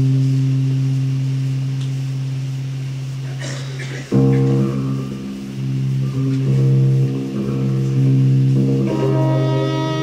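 Live instrumental music starting up. A low held chord slowly fades, a new chord with several sustained notes over it comes in about four seconds in, and higher notes join near the end.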